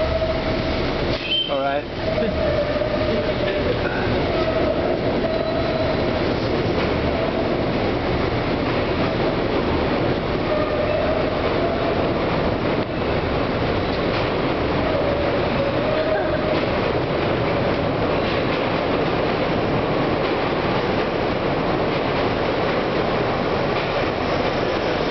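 Continuous-belt man lift running: a steady mechanical rumble and rattle from the belt and its drive. A wavering whine comes and goes over it, with a short squeak about a second and a half in.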